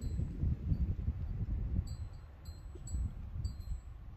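Wind rumbling and buffeting on the microphone, with a wind chime ringing faintly a few times in short, high, steady tones.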